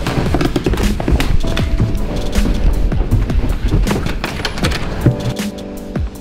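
Background music with a fast, busy percussive beat.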